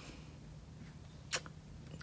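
Quiet room tone with one short, sharp click just past halfway through, followed by a fainter one.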